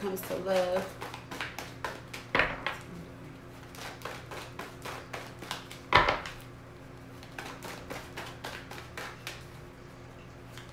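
Tarot cards being shuffled by hand, a quick patter of card clicks throughout. There are two sharp knocks, about two and a half seconds in and again about six seconds in, as the deck is knocked against the wooden table.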